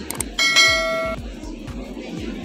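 Background music with a steady low beat, and a bright bell-like chime that sounds once about half a second in and cuts off after under a second.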